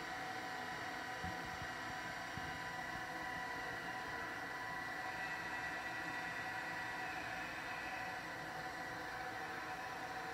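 Faint steady drone of several held tones over a soft hiss, with small shifts in pitch about halfway through and a light knock about a second in.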